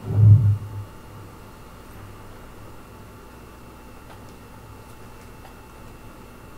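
A deep, low boom right at the start that dies away within a second, then a low steady hum with a few faint clicks, from the horror film's soundtrack.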